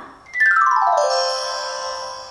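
A short musical tone that slides down in pitch, then holds one steady note that fades out, sounding like an electronic chime or jingle.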